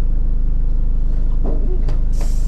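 A delivery van's engine idling steadily, heard from inside the cab.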